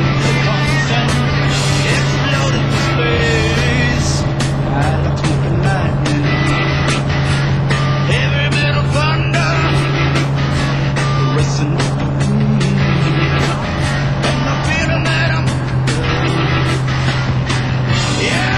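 Single-engine light aircraft's piston engine and propeller making a steady drone during the takeoff roll from a dirt airstrip, with rock music with singing playing over it.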